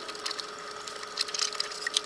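Fingers handling the plastic feeder parts and filament inside an opened Anycubic ACE Pro filament unit: small, irregular clicks and scratchy ticks, over a faint steady hum.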